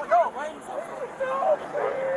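Several people shouting and yelling over one another in short, overlapping calls.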